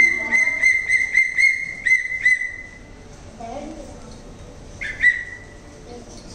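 A high whistle calling the dog, blown in a quick run of short pulses for about two and a half seconds, then once more with a rising start near the end.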